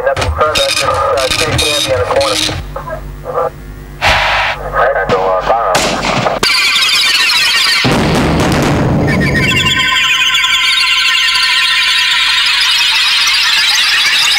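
Television title-sequence soundtrack of electronic music and sound effects. For the first six seconds a voice sounds over the music, with a quieter dip in the middle. From about six seconds in, a loud, dense, steady electronic texture takes over, with a sweep in pitch running through it.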